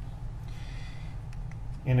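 Steady low hum of a courtroom microphone feed with a few faint clicks, then a man starts speaking near the end.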